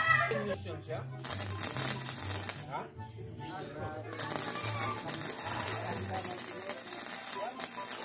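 Electric arc welding on steel tubing: the arc crackles and sizzles in two spells, briefly about a second in and then steadily from about four seconds in.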